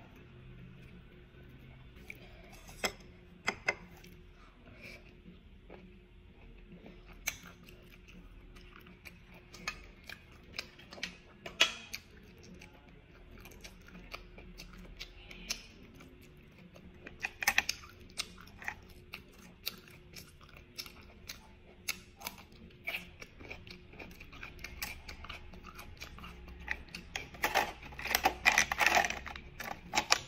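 Close-up eating sounds from steamed bulot whelks: scattered sharp clicks and clinks of the shells being handled and knocked against a metal steamer tray as the meat is picked out with a toothpick, with soft chewing. Near the end comes a denser run of clicking and rustling.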